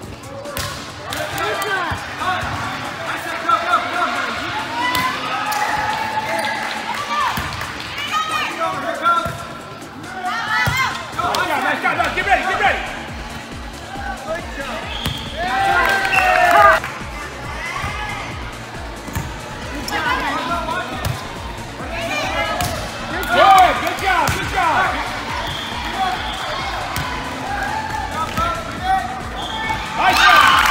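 Girls' voices calling out and cheering in a large, echoing gym during volleyball play, with thumps of the ball. Background music with a steady low beat comes in about twelve seconds in.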